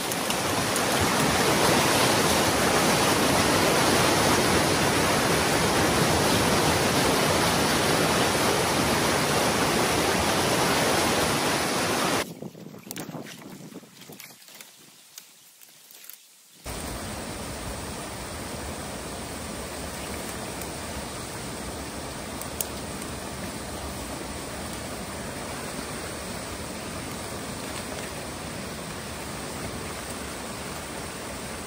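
Water rushing through a breach in a beaver dam, loud and close. About twelve seconds in it drops away sharply to a faint level for a few seconds, then comes back as a steady, quieter rush of water pouring through the gap.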